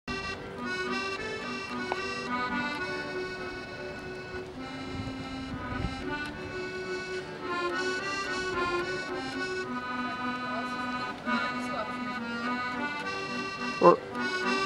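Accordion playing a lilting melody over steady bass notes and chords. Near the end there is a short, loud voice sound, an 'uh'.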